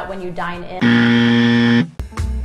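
A game-show style "wrong answer" buzzer sound effect: one loud, flat, low buzz lasting about a second, starting and stopping abruptly, after a brief bit of a woman's speech.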